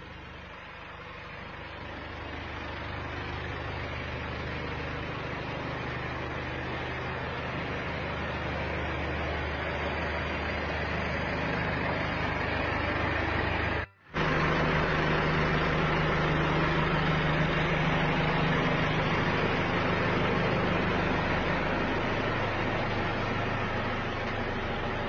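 Isuzu Elf NHR minibus diesel engine idling steadily, with a brief break about 14 seconds in; the seller describes the engine as having blow-by.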